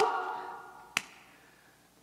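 The last sung note dies away in the room's echo, then a single sharp finger snap about a second in. It is one beat of a slow, steady snap, about every two seconds, keeping time under the unaccompanied singing.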